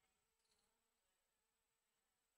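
Near silence: the audio is almost completely muted, with only a very faint steady electrical hum.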